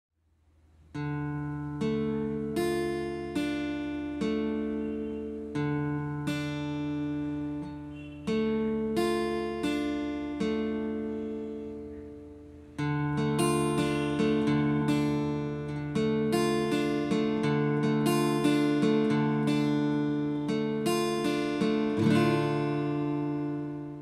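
Steel-string acoustic guitar picked with a plectrum, playing chords as arpeggios, one string at a time. The notes ring on into each other, with D minor among the chords. The picking grows denser about halfway through and fades out at the end.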